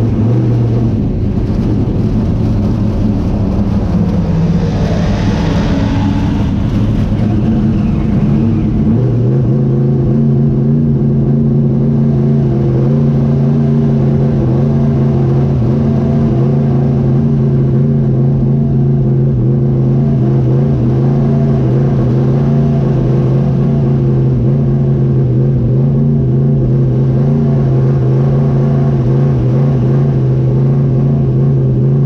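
Small-block 358 dirt modified race engine running at low revs, heard from inside the car's cockpit; its pitch wavers for the first several seconds, then holds steady. A rushing noise swells and fades about five seconds in.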